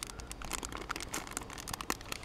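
Small metallic foil packet crinkling and tearing open in the fingers, a run of quick irregular crackles.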